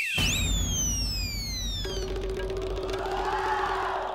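A short shrill whistle that ends about half a second in, then a comic sound-effect sting for a scene change: high falling swooshes over a low rumble, with a held low tone joining about two seconds in and a rising-and-falling tone near the end.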